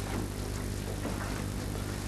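A pause in speech in an old lecture recording: a steady low hum with hiss, unchanging throughout.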